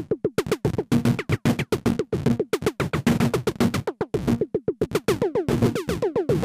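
Eurorack modular synthesizer, patched through the Dual Digital Shift Register, playing a rapid stuttering stream of short noisy electronic hits, around eight a second with irregular gaps: pseudo-random gates used as a noise source. From about five seconds in, each hit turns into a falling zap.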